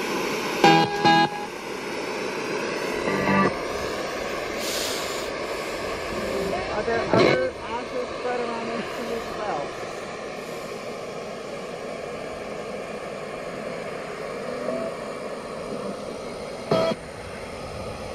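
Ghost-hunting spirit box app (Necrophonic app) putting out a steady wash of static, with short garbled voice-like snatches breaking through a few times.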